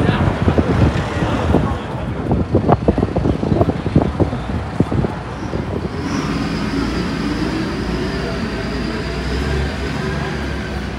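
Street traffic: a motor vehicle's engine runs close by from about six seconds in, a steady rumble with a faint high whine and a slowly rising note. Before that comes a jumble of sharp, irregular knocks and clatter.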